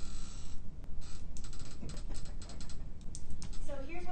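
A rapid run of light clicks and taps in the middle, with a voice starting just before the end.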